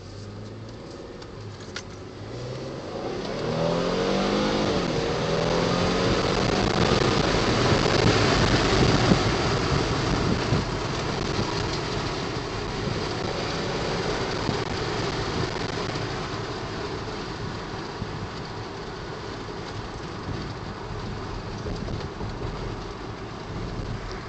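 2010 Ford Flex's twin-turbo EcoBoost V6, heard from inside the cabin, accelerating. The engine note climbs in pitch from about two seconds in and is loudest around eight to nine seconds. It then eases into a steady hum of engine, tyres and wind as the car cruises.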